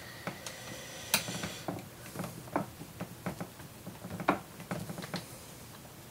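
Irregular small clicks and taps of a screwdriver taking a screw out of the plastic underside of a Sony VAIO laptop, with hand contact on the case.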